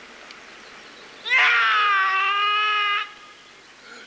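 One long, drawn-out kiai shout from a Jikishinkage-ryu sword practitioner during the Hojo kata. It starts a little over a second in with a quick rise in pitch, then is held for nearly two seconds before stopping.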